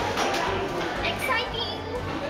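Excited chatter from a group of young people, several voices overlapping with high-pitched calls but no clear words.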